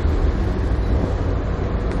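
Steady low rumble of wind on a Galaxy Nexus phone's built-in microphone, partly held down by the phone's wind noise cancellation, on the deck of a moving ferry.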